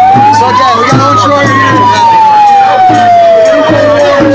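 A siren wailing: one long sweep that rises to its peak about a second in, then slowly falls.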